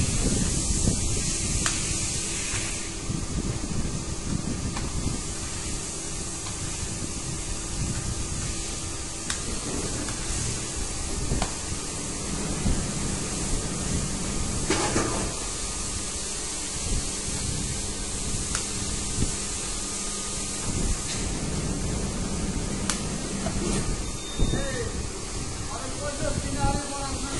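Steady machinery noise with a hiss over it, broken by a few sharp clicks and knocks.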